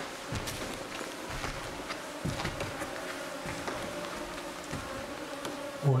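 A mosquito's steady, unbroken whine, with a few soft knocks in the background.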